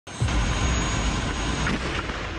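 Tracked armoured vehicle running: a dense, steady engine and track rumble, heavy in the low end, with a thin high whine that stops near the end.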